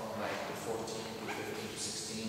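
Indistinct voices of people talking, with no clear words. About halfway through there is a short rising vocal sound.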